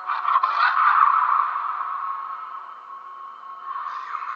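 Movie trailer soundtrack playing: a few clattering knocks at the start, then a loud noisy swell of sound effects that fades away after about two seconds.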